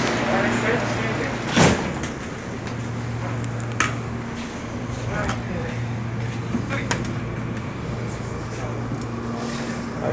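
Steady hum of a train carriage's ventilation and electrics, with a loud knock about two seconds in and a few lighter knocks and clicks as a moped is handled aboard.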